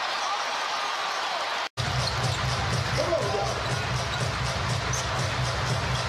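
Basketball broadcast game sound: a steady arena crowd bed with a ball bouncing on the hardwood court. It drops out completely for a moment about two seconds in, at a splice between clips.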